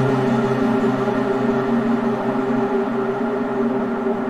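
Arturia MicroFreak synthesizer playing sustained saw-wave tones through Cloud Seed reverb, giving a dark, drone-like pad. The lowest tone dims briefly about three seconds in.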